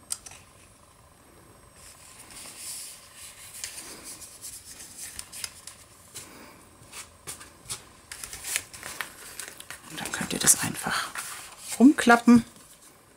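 Cardstock and paper being handled and pressed onto a card: soft paper rustling with small taps and clicks, louder rustling near the end.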